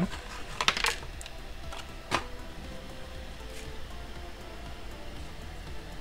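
A few sharp clicks and taps of small plastic model-kit parts being handled, about a second in and again near two seconds, then quieter handling over faint background music.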